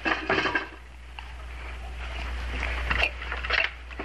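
Light handling noises at a table: a glass of milk being drunk down and set back, and a wooden box being set on the counter and unlatched, with a sharp click about three seconds in, over a steady low hum.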